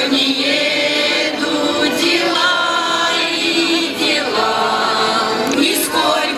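Russian folk choir, mostly women's voices, singing a folk song through stage microphones, in long held phrases with short breaks about every two seconds.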